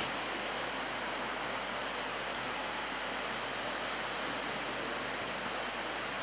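Steady background hiss, the room tone picked up by a stage microphone, with a faint click about a second in.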